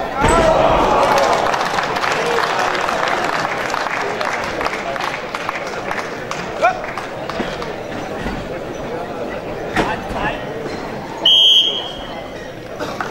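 Hall crowd shouting and cheering as a Greco-Roman wrestling throw lands, with a thud on the mat at the start and the noise loudest in the first couple of seconds, then easing off. Near the end a referee's whistle blows once, short and shrill, the loudest sound, stopping the bout after a five-point throw has ended the round early.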